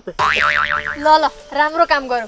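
Comic 'boing' sound effect: a bright tone wobbling quickly up and down several times for about half a second, followed by a person talking.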